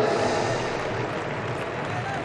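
Steady hubbub of a large indoor arena hall. In the first half second the echo of an amplified voice over the public-address system dies away.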